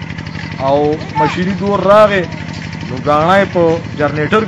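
An engine idling steadily with an even low pulse, running under a man's voice as he talks.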